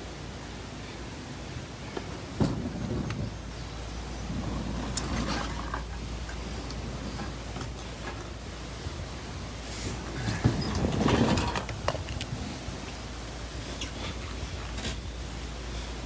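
A canoe being shifted by hand over rocks: scattered knocks and clicks, with a longer stretch of scraping about ten seconds in, over a steady low rumble.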